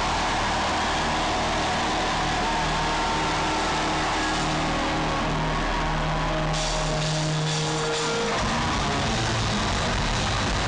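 Loud live hard-rock band playing: distorted electric guitars, bass guitar and drums through a concert PA. It is heard from the audience, with the level evenly squashed throughout, and a held low note changes about eight seconds in.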